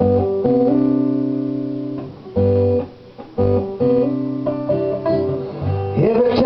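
Acoustic guitar played alone: chords strummed and left to ring, each fading before the next, with a couple of brief gaps.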